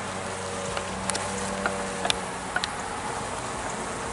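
Steady buzzing hum of a honey bee colony on an open hive frame, with a few faint clicks.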